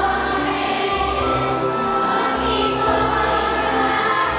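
Large choir of elementary-school children singing with musical accompaniment, the voices and low bass notes held steadily throughout.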